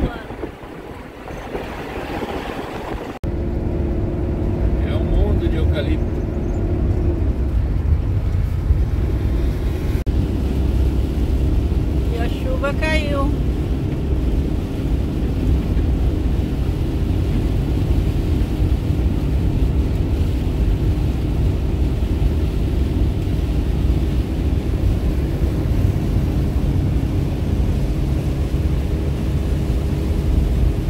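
Inside a motorhome cab driving on a wet highway: a steady low rumble of engine and tyre noise with a faint hum. It cuts in suddenly about three seconds in, after a quieter opening.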